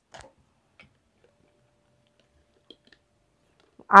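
A few faint, irregular clicks and light taps of small gold-plated jewellery being handled.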